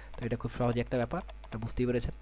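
A man talking, over a run of quick, light clicks from a computer mouse as the Photoshop zoom tool is clicked on the image to zoom out.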